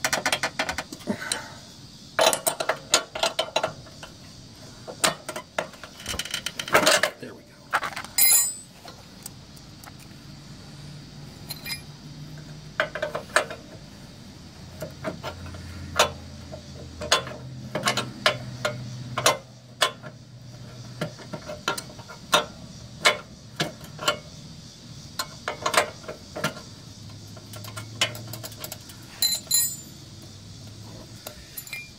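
Wrench and socket clicking and metal tools clinking in scattered short bursts while a deck-height adjustment bolt is worked loose.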